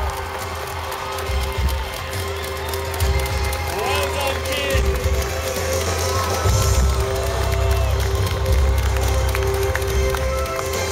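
Music with heavy bass and long held notes played loud through a stage PA system, over a large crowd cheering and shouting.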